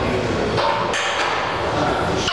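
Barbell loaded with 225 lb of iron plates knocking on the floor during a deadlift rep, two sharp knocks close together about a second in, over steady gym background noise.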